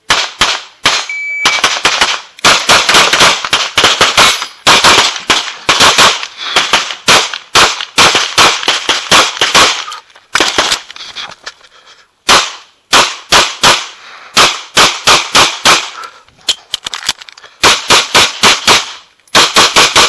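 Semi-automatic pistol fired in fast strings of shots, mostly quick pairs, with short pauses between strings as the shooter moves between shooting positions on an IPSC stage. A short high beep sounds about a second in.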